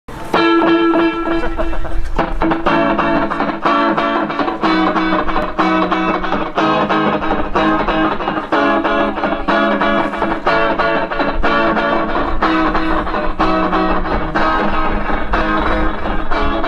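Live rock band playing, led by an electric guitar through an amplifier with effects: a repeating picked figure of ringing notes, re-struck in a steady rhythm.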